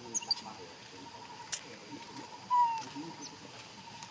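Short high squeaks and chirps, the loudest a short falling squeak about two and a half seconds in, with a sharp click about a second and a half in.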